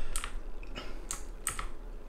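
Computer keyboard keys being pressed: about four separate keystrokes, roughly half a second apart.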